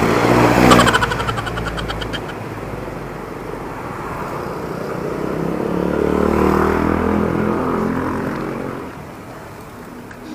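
Street traffic heard from a moving bicycle at night: a motorcycle engine close by at the start, then another vehicle's engine swelling and fading about six to eight seconds in, over steady road noise.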